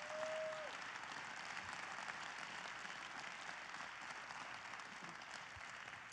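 Audience applauding steadily, faint and even, with a short held tone in the first half-second.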